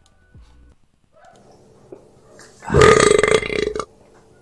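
A recorded burp sound effect, lined up with a sigh to make a very loud burp. It comes in nearly three seconds in and lasts about a second: one deep, rattling belch.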